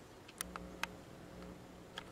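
A few faint, sharp clicks in the first second, over a low steady hum: quiet room tone.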